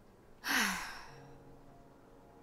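A woman's sigh about half a second in, breathy and falling in pitch. Soft sustained music notes come in just after it.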